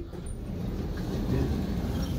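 Midland Lifts lift doors sliding open after the "door opening" announcement: a steady low rumble from the door operator and the running doors.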